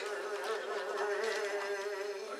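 One long chanted vocal note of kagura, held steady at a single pitch.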